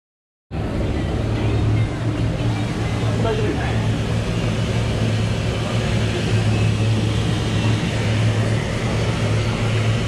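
Steady noise of a commercial ramen kitchen: a gas burner and ventilation running under a large stockpot of pork-bone soup at the boil, with a constant low hum. It starts abruptly about half a second in.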